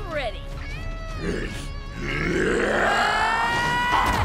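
A cartoon heroine's battle cry: short effortful grunts, then a long shout rising in pitch through the last two seconds, over background music and a swelling whoosh.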